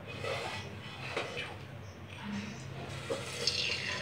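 Faint sizzle of a small test drop in heating oil in a kadai, becoming clearer near the end, a sign that the oil is hot enough for frying. Low voices sound in the background.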